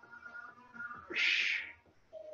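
A sharp, hissing breath blown out through the mouth about a second in, the exhale on a reverse-curl rep, over faint background music.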